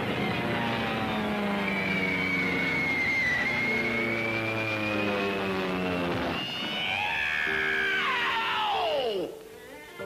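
Orchestral cartoon score with a long, wavering high whine over it, like a squadron of aircraft in flight. About six and a half seconds in, a steeply falling dive-bomber whistle sweeps down and cuts off suddenly a little after nine seconds, leaving quieter music.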